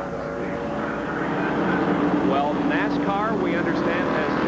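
A pack of NASCAR stock cars racing past at full speed, their V8 engines a steady drone that grows a little louder about a second in.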